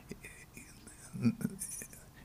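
A pause in talk with faint room tone, broken just past a second in by a brief, quiet murmured voice.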